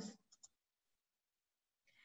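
Near silence after the tail end of a spoken word, with two faint clicks about half a second in.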